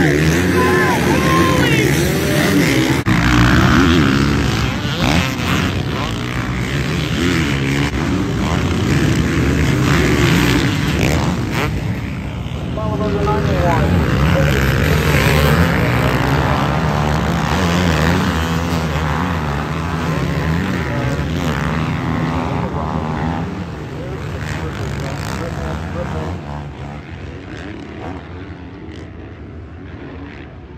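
Several motocross bikes racing past, their engines revving up and dropping in pitch as the riders shift and work the throttle over the jumps. The engine sound fades down over the last few seconds.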